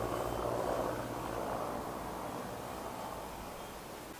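A low, steady engine drone in the distance, fading gradually.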